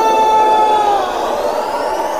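Break in an electronic dance music mix: a held high synth note fades out about a second in while a rising sweep effect climbs steadily, with no beat.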